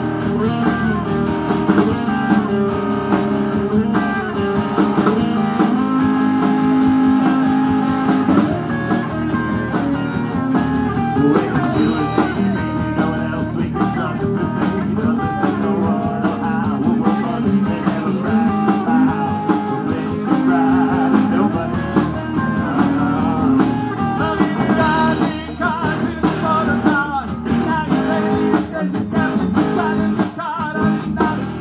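Live rock band playing: electric guitars over a drum kit, with cymbal crashes about twelve seconds in and again near twenty-five seconds.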